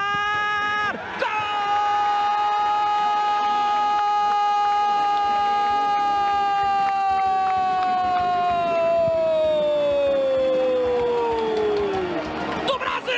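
A Brazilian football commentator's long drawn-out goal cry, held on one pitch for about ten seconds and sliding down near the end, after a brief shout at the start, as Neymar's penalty goes in.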